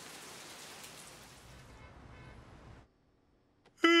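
Steady rain pattering down; it cuts off abruptly about three seconds in. Near the end a cartoon bear's voice starts a long waking 'ah' that falls in pitch as he stretches.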